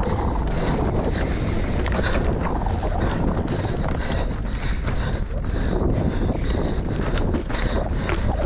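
Wind rushing over the microphone of a mountain bike ride camera, over the rolling noise of knobby tyres on a dirt singletrack. The bike's chain and frame rattle and clatter over bumps throughout.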